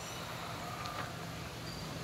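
Faint, steady outdoor background noise with a low hum and no distinct event.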